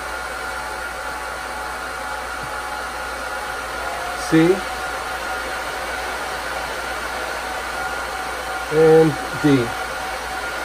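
Cooling fans of a Supermicro SYS-2029BT-HNR four-node server and a Mellanox SN2010 Ethernet switch running steadily, an even rushing noise with a steady high whine over it, as the server nodes are powered on.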